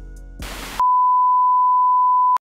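Song's last held notes, cut off by a short burst of static hiss, then a loud, steady test-pattern beep: the single-pitch tone that goes with a TV colour-bars screen.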